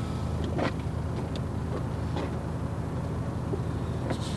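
Car engine idling steadily, a low even hum, with a few faint scuffs over it.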